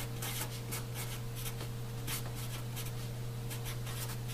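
Sharpie felt-tip marker writing on paper: a run of short, irregular pen strokes as an equation is written out, over a steady low hum.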